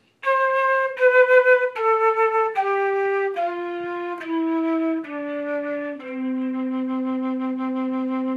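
Concert flute playing a descending C major scale: eight notes stepping down one at a time, each lasting just under a second. It ends on the flute's low C, fingered with the pinky on the foot-joint keys, which is held for about two and a half seconds.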